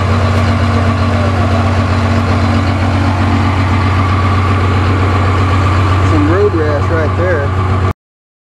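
Ford Super Duty pickup's turbo-diesel engine idling steadily, then cutting off abruptly just before the end.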